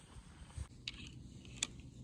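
Quiet outdoor background with a faint low rumble and two light clicks, a little under a second apart.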